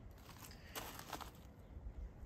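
Faint crunching, with two soft clicks a little under a second in and just after a second, over a low steady rumble.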